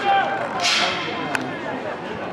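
Players shouting on a football pitch, with one sharp crack just over a second in.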